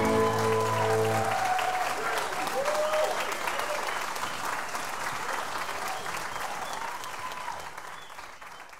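A live band's final held chord rings out and stops about a second in. The audience applauds, with whoops, and the applause fades away toward the end.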